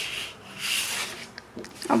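Sheets of 12x12 scrapbook paper sliding and rubbing against each other as they are shifted by hand: two brief rustling swishes, the second about half a second in.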